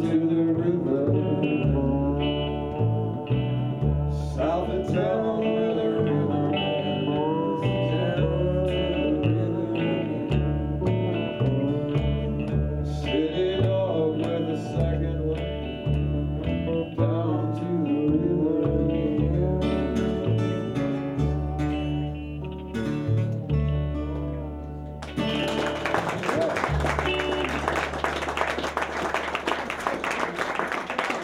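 Live folk band playing an instrumental passage with acoustic guitar picked with a thumb pick, electric guitars and upright bass, with a stepping bass line. The music ends about 25 seconds in, and applause follows to the end.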